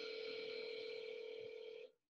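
Telephone ring tone of a call waiting to be answered: one steady buzzing tone about two seconds long that cuts off sharply.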